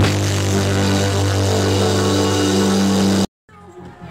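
Live band music: a sustained chord over a steady low bass note, which cuts off abruptly a little over three seconds in. After a moment of silence, quieter sound comes back.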